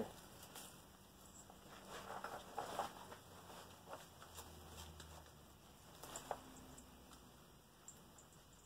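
Faint rustling of cloth and small scattered clicks as hands rummage through the pockets of a pair of cargo pants, a little louder a couple of seconds in.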